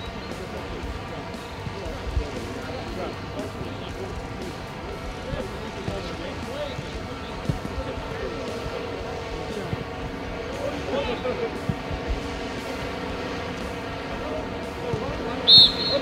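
Football training-pitch sound: players' voices and shouts in the open air over the thuds of footballs being kicked and bouncing. Near the end comes one short, high, loud whistle blast.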